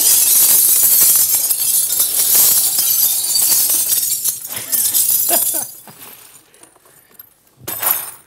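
Broken glass bottles poured out of a crate onto a cloth on the floor: a long, loud cascade of crashing and clinking shards that dies away about six seconds in.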